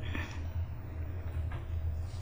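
Room tone dominated by a steady low hum, with a faint steady higher tone above it.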